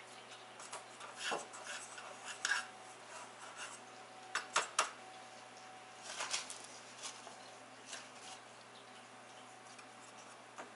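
Light taps and clatter of a metal muffin tin on a countertop as pastry rounds are pressed into its cups, with a pair of sharper clinks a little before halfway.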